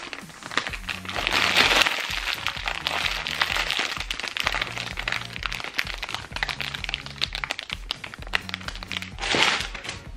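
Clear plastic packaging crinkling and crackling as it is handled and opened to free a squishy toy, loudest about a second in and again near the end. Background music with a steady bass beat runs under it.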